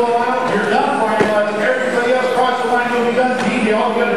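A race announcer's voice, drawn out and indistinct, calling the race.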